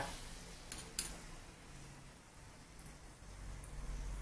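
A metal ladle clinks lightly against a saucepan twice, about a second in, over the faint sizzle of a bread roll frying in oil on low heat.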